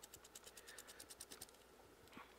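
Faint, rapid scratching of a stiff paintbrush flicked back and forth across a textured foam claw in dry brushing, about ten strokes a second, stopping about one and a half seconds in.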